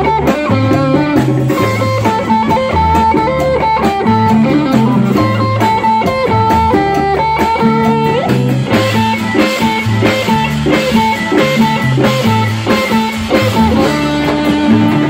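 Live Latin rock band: an electric guitar plays a lead melody with long held notes over a rhythmic bass guitar line, keyboards and drums. Cymbals grow brighter about two-thirds of the way through.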